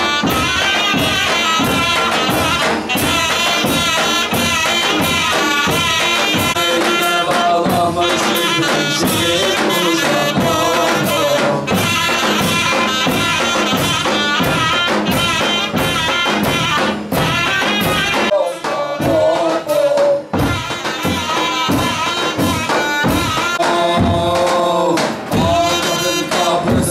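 Ottoman mehter band playing a march: zurnas carry a loud, steady melody over a driving beat from the big davul and kös drums.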